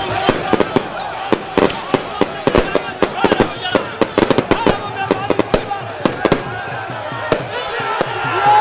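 Firecrackers going off in a rapid, irregular string of dozens of sharp cracks over a shouting crowd. The cracks thin out over the last couple of seconds.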